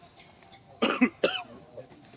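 Macaque giving three short, harsh calls in quick succession about a second in.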